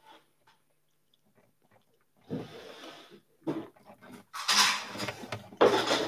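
Near silence for about two seconds, then soft breathy noises and small handling sounds close to the microphone, the loudest a breathy rush about four and a half seconds in.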